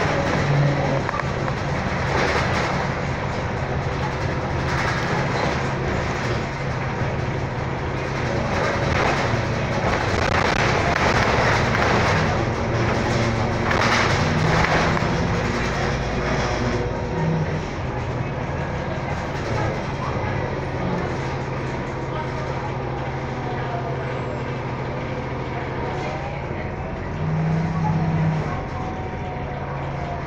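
Inside a moving Orion VII hybrid-electric transit bus: steady drivetrain hum and road noise, with a whine that rises and falls in pitch in the second half.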